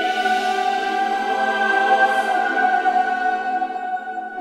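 Cinematic choir music: a choir holding a sustained chord that stays steady throughout.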